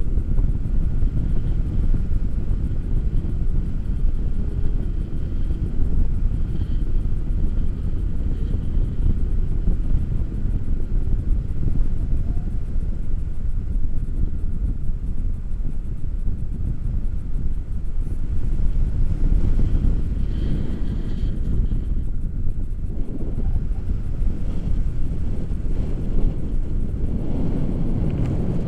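Wind from the glider's airspeed rushing over the camera microphone in flight, a steady low rumble.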